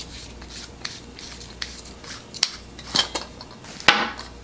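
Metal flashlight body being opened by hand: faint rubbing and handling with scattered small clicks, and sharper metallic clicks near the end as the battery carrier comes out of the tube.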